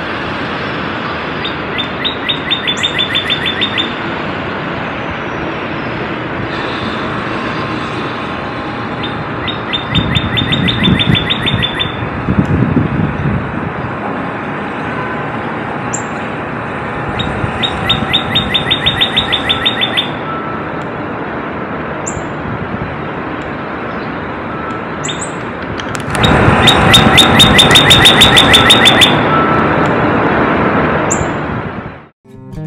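Northern cardinal singing: four bouts of rapidly repeated notes, about five or six a second, each lasting two to three seconds, the last near the end the loudest. A steady background noise runs underneath.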